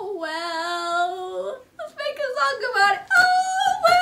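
A young girl's voice drawn out in long, wavering sung-out notes with no words: one long held note, a few shorter falling syllables, then a higher held note near the end.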